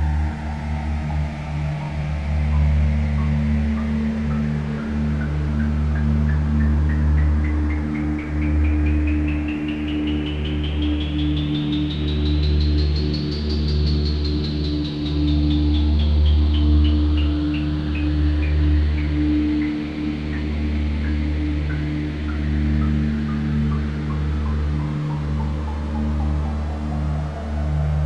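Generative ambient electronic music on a modular synthesizer. Steady low drones sit under a stream of short pitched blips, which climb steadily in pitch to a peak about halfway through and then slowly fall again.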